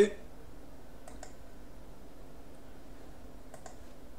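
Computer mouse clicks while choosing an item from a web page's drop-down menu: a couple of short clicks about a second in and another couple near the end, over a faint steady hum.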